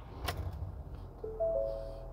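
2019 Ford F-250's 6.7-litre Power Stroke turbo-diesel V8 starting right up and running at a low, steady idle, with a click about a quarter second in. From about a second and a quarter in, a dashboard warning chime of a few overlapping steady tones sounds over it.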